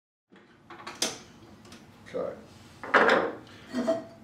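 Handling noises of tools and fixture parts on a table. A sharp click comes about a second in, a softer knock near two seconds, and the loudest clatter about three seconds in.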